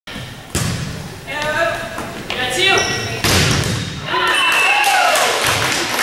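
A volleyball struck hard twice, sharp thumps about half a second in and again just after three seconds. Between and after the hits, girls' voices shout and cheer with high gliding calls as the point is won.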